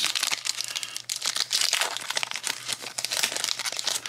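Foil wrapper of a Pokémon TCG booster pack crinkling and rustling as it is torn open by hand, a dense run of irregular crackles.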